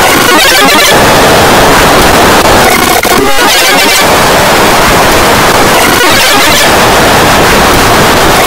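Harsh, heavily distorted and clipped noise at a constant high loudness, a cacophony with no clear voice or tune left in it: a cartoon soundtrack mangled by audio effects.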